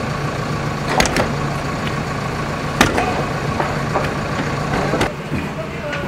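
A motor vehicle engine running steadily, with a few sharp knocks about a second in, near the middle and about five seconds in.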